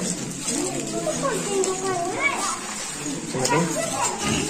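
A crowd of young children chattering and calling out together, several small voices overlapping at once.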